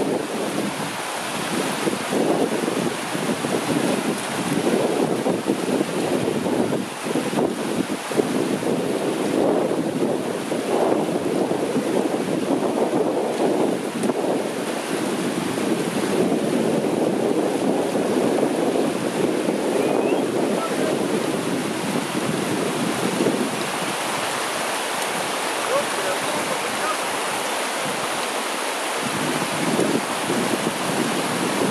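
Fast-flowing, shallow, rocky river rushing steadily around the waders' legs, with wind gusting on the microphone.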